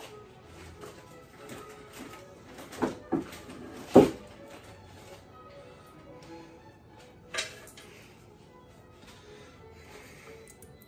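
Soft background music with a few sharp kitchen knocks and clunks from off camera. The loudest knock comes about four seconds in, with others just before it and one near seven and a half seconds.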